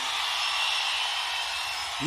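A steady, even hiss of background noise with no distinct events, the same din that runs under the speech.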